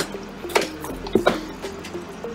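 A few sharp plastic knocks and clatters as spent coffee grounds are tipped from a coffee machine's plastic dregs drawer into a pedal bin, with a soft wet falling of the grounds, over faint background music.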